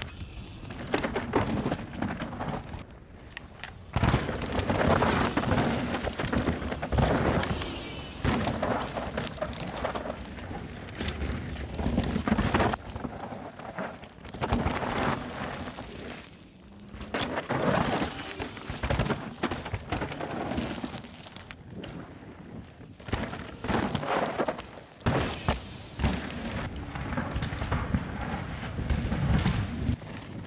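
Rocky Mountain Slayer mountain bike ridden hard downhill: tyres rolling, crunching and skidding over loose dirt, gravel and rock, heard over several separate passes, with sudden jumps in loudness between them.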